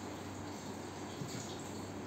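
Quiet room tone: a faint steady hiss with a low hum, and no distinct sound event.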